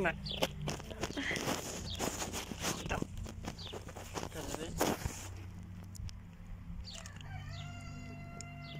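A rooster crowing, one long held call starting about seven seconds in. Before it come scattered clicks and knocks.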